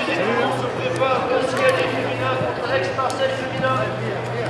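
Indistinct, overlapping men's voices as rugby players talk and call out among themselves, with a steady low hum underneath.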